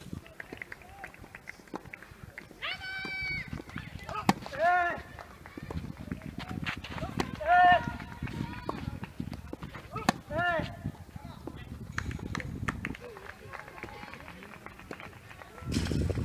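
Tennis rally on a clay court: sharp racket-on-ball hits, with short, high-pitched shouted calls from players several times, and light footfall and ball bounces between them.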